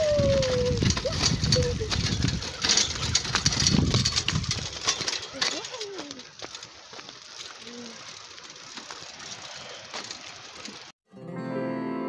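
A child's small bicycle rolling over a dirt track: a rattling, rustling clatter with a few brief voice sounds, louder for the first half and quieter after. About eleven seconds in it cuts off and background music starts.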